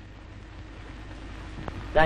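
A pause in the dialogue: the steady low hum and hiss of an old film soundtrack, with a faint click near the end, just before a man's voice starts.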